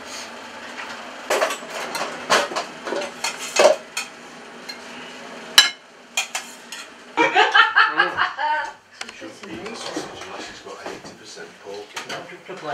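Metal serving utensils clinking and scraping against china plates as food is dished up, a run of sharp clinks with one louder clink about five and a half seconds in. Indistinct voices and laughter follow in the second half.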